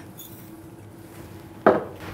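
Ground coffee poured from a small cup into a glass French press carafe, quiet at first, then a single sharp knock near the end.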